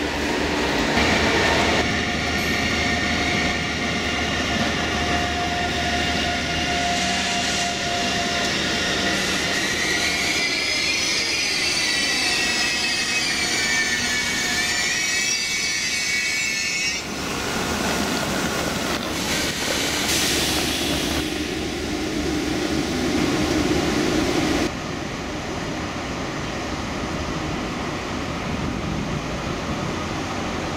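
ICE 3 electric high-speed train rolling in along the platform as it brakes, with a wavering high-pitched wheel and brake squeal for several seconds in the middle. The sound drops and turns duller a few seconds before the end as the train slows to a stop.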